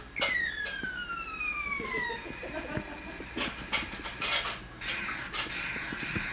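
Battery-powered toy giving an electronic sound effect: a single tone that glides steadily down in pitch over about two seconds, followed by a few light clicks.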